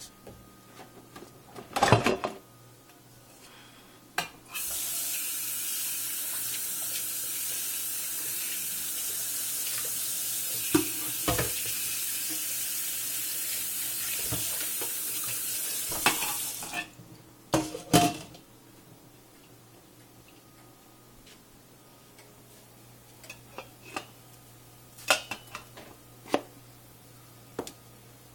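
Pots and a lid clattering about two seconds in, then a kitchen tap running steadily for about twelve seconds before it is shut off, followed by scattered clinks and knocks of cookware.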